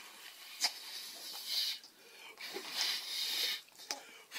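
Small dog biting at the air, its jaws snapping with a few sharp clicks and breathy huffs between.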